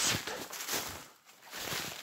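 A person walking through snow-covered forest: irregular footsteps and clothing rustling, briefly quieter about halfway through.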